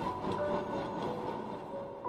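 Background score: a few long held notes over a rumbling, rattling noise layer, like a train's clatter, which thins out near the end.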